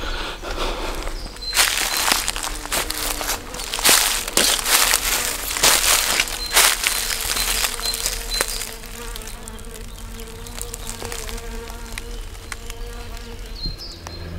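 Footsteps crunching through dry fallen leaves over the first half or so, with a flying insect buzzing steadily that is left on its own once the steps stop.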